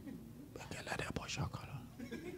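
Faint, quiet voices, close to whispering, about half a second in until near the end.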